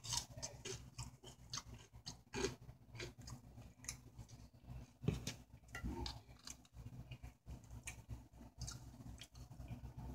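A person chewing a mouthful of seasoned potato wedge, heard as faint, irregular small mouth clicks and smacks. There is one louder knock about five seconds in.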